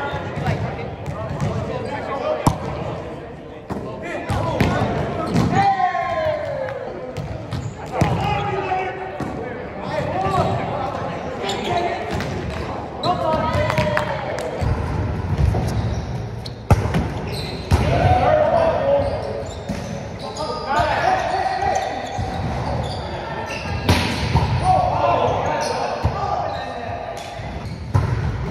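Volleyball being played in an echoing gym: sharp, scattered smacks of the ball being hit, with players calling and shouting.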